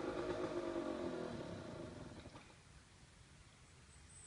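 Off-road motorbike engine running low with a slightly falling pitch, fading and dying away about two and a half seconds in, with the bike down on its side after a failed hill climb.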